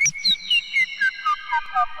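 Behringer Neutron analog synthesizer sounding a quick run of short electronic blips, each gliding down in pitch, about four a second; the run starts suddenly high and steps lower with every blip, and the tones ring on and overlap one another.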